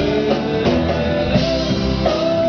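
Live pop-rock music: a male singer with guitar accompaniment, played loud through the venue's sound system.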